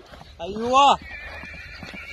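Horse's hooves on a dirt track at a prancing canter, with one drawn-out call that rises and falls about half a second in.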